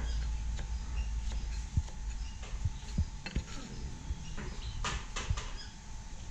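A kitchen knife chopping a bunch of greens on a thick wooden chopping block: irregular dull knocks, with several sharper strikes about halfway through and near the end.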